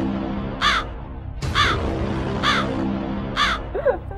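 A crow cawing four times, evenly about a second apart, over a steady music bed. It is a comic sound effect marking an awkward pause after a punchline.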